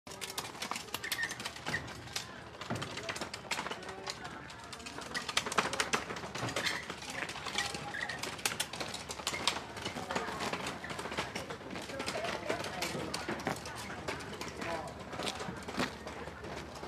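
Birds chirping in outdoor ambience, with many short, sharp, irregular clicks.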